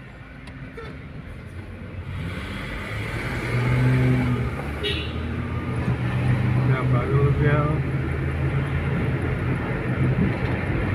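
Car heard from inside the cabin while driving: a steady low engine and road hum that grows louder over the first few seconds as the car picks up speed, with a voice over it.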